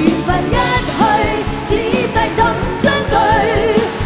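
A female singer with a live pop band performing a Cantonese pop song, drums and bass keeping a steady beat under her. Her voice holds long notes with vibrato.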